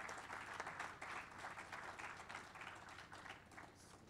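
Audience applauding, a dense patter of many hands clapping, heard fairly faintly and easing off near the end.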